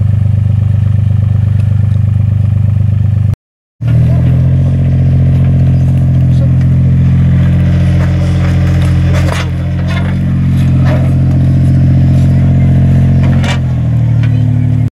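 Diesel engine of a compact excavator running steadily, broken once briefly about three seconds in. Short scrapes and clinks, typical of trowels working stony soil, come through over it in the last few seconds.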